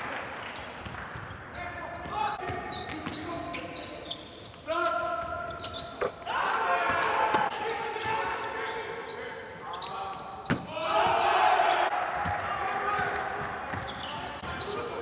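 Live basketball court sound in a near-empty hall: the ball bouncing on the hardwood floor, sneakers squeaking, and players calling out to each other.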